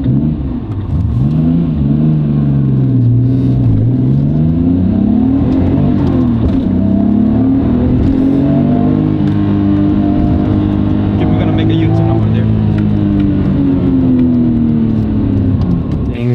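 Nissan R32 Skyline GT-R's twin-turbo RB26 inline-six with upgraded turbos, heard from inside the cabin while accelerating hard. The pitch climbs, drops at a gear change about four seconds in, climbs again and holds, then falls away near the end.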